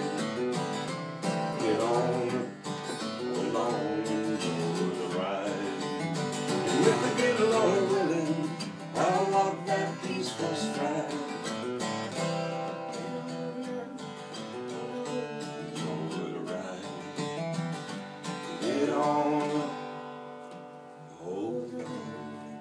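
Acoustic guitar strummed with voices singing over it in a country-style song, the music easing down in level near the end.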